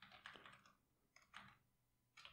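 Faint typing on a computer keyboard: a quick run of keystrokes at the start and another short run a little past halfway.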